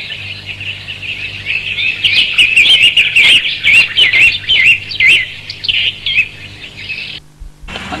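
Songbirds chirping in a busy, continuous run of short repeated notes, thickest in the middle, over a steady low hum; everything cuts out for about half a second near the end.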